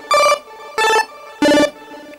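Nord Stage 3 Compact synth section (Nord Lead A1 engine) playing an arpeggiated pulse-wave chiptune tone: short bright notes about 0.6 s apart, stepping down in pitch, with faint ping-pong delay echoes and reverb filling the gaps between them.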